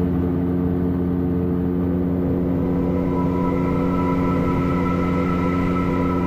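Calidus gyrocopter's engine and pusher propeller heard in the cockpit at steady cruise: an even, unchanging drone.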